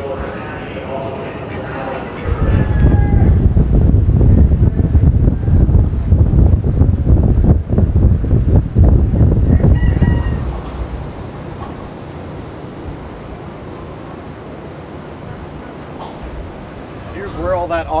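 Chickens in wire show cages, with a rooster crowing. Voices talk at the start, and a loud low rumble runs through the first half.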